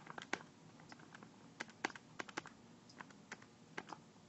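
Keys being tapped to enter a calculation: a dozen or so light, sharp clicks at an uneven pace.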